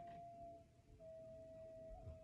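Faint background music: a single soft held tone that steps slightly in pitch about a second in, otherwise near silence.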